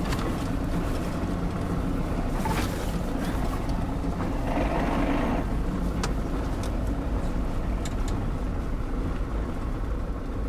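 Isuzu Trooper driving on a rough dirt road, heard from inside the cabin: a steady low rumble of engine and tyres with faint scattered rattles and knocks.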